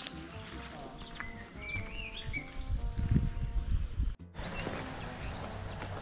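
A soft melody of held notes stepping up and down, with a bird chirping briefly about two seconds in. The sound cuts out for a moment about four seconds in.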